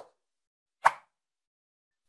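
Two short pop sound effects from an animated end screen, about a second apart, the second higher in pitch than the first.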